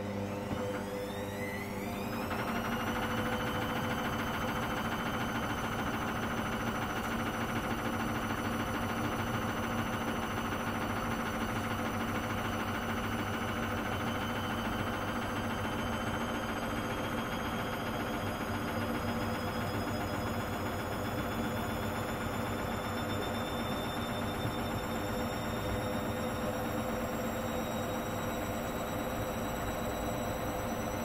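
Hoover Dynamic Next washing machine in its 800 rpm intermediate spin: the motor's whine climbs quickly in the first few seconds as the drum speeds up, then holds at a high steady spin, its pitch creeping slowly higher.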